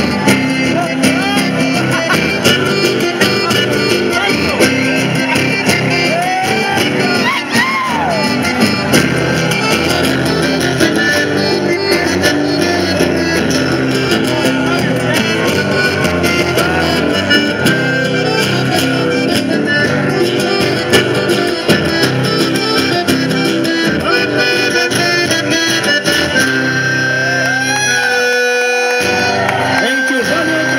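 A chamamé played live on acoustic guitars, running steadily; the low notes drop out briefly near the end.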